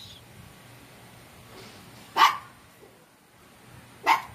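A dog barks once, a single short, sharp bark about two seconds in.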